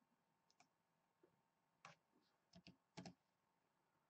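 A few faint clicks of a computer keyboard and mouse, about seven in all, some in quick pairs.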